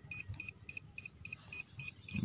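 Metal-detector pinpointer giving a steady series of short, high beeps, about three to four a second. The beeps come spaced rather than as one continuous tone, which the searcher takes to mean that there is metal a little deeper down.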